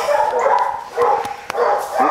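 A young lab/pit mix puppy whining in short, repeated whimpers.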